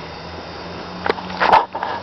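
Honeybees humming steadily around an opened hive, with a few sharp clicks about a second in and a louder brief knock about a second and a half in.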